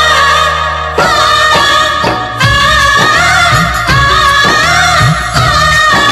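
Jhankar-style remix of a 1990s Bollywood film song: a wavering melody held over a heavy drum beat of about two hits a second.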